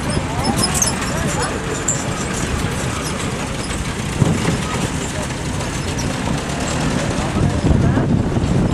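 Four-cylinder engines of WWII-era jeeps running at low speed as they drive slowly past, a steady low rumble.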